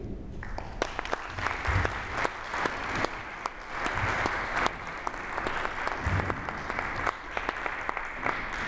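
An audience applauding, the clapping starting about half a second in and going on steadily as a dense patter of claps.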